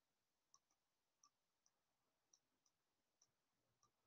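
Near silence, with very faint small clicks about twice a second.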